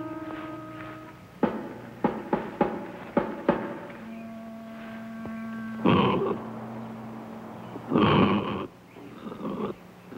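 Horror film soundtrack: sustained bell-like music notes fade out, then a run of sharp knocks and a held tone. Two rough growls come about six and eight seconds in.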